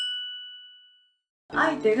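A single bright chime struck once, a ding with a clear two-note ring, fading away over about a second: an editing sound effect on a segment title card. A woman's voice begins near the end.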